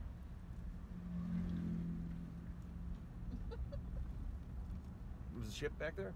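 Car interior road and engine noise, a steady low rumble. A flat low hum rises over it about a second in and lasts about two seconds.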